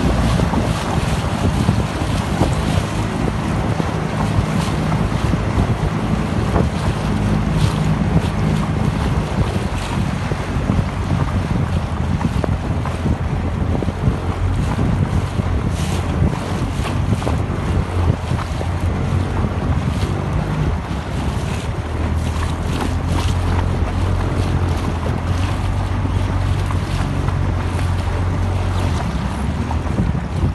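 Wind buffeting the microphone over water rushing and splashing along a small inflatable boat's hull, with the boat's engine running steadily underneath, its hum shifting slightly in pitch a few times.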